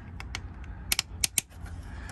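Hinged plastic cover on an exterior connection port being lifted open by hand: about six light clicks and snaps, the sharpest pair about a second in.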